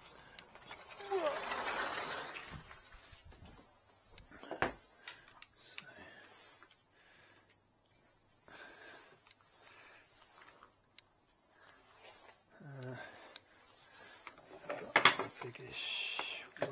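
A sliding patio door scraping and squeaking along its track for a couple of seconds. This is followed by scattered clicks and rattles of plastic drill-bit cases being opened and bits picked through.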